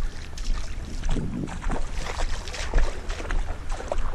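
Footsteps splashing irregularly through shallow water over a sand flat, with wind rumbling on the microphone.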